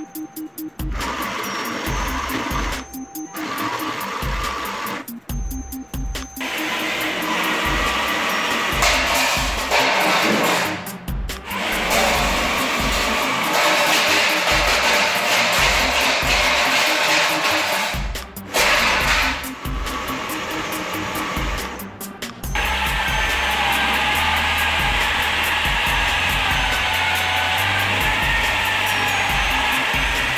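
Whirring of a small battlebot's electric DC gear motors, starting about six seconds in and breaking off and restarting several times, its pitch wavering near the end. Background music with a steady beat plays throughout.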